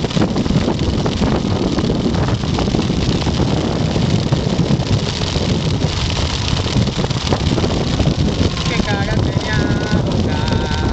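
Heavy wind buffeting on the microphone over a motorcycle engine running steadily while riding. A brief voice is heard near the end.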